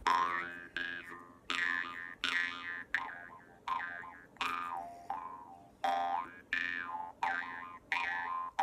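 Metal jaw harp plucked in a steady rhythm, about one and a half plucks a second, each twang decaying over a constant low drone. Its overtones slide up and down from pluck to pluck as the mouth shapes the tone.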